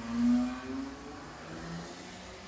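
A man's voice in a drawn-out hesitation sound, a held 'uhh' or hum, that drops to a lower pitch about halfway through.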